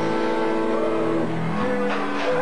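Live rock band playing: electric guitar chords held and ringing, changing to a new chord about a second and a half in.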